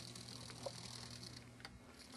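Very faint, steady hum with a couple of soft ticks: an N scale GE 70-ton model diesel locomotive running slowly and quietly on an 8-volt transistor throttle.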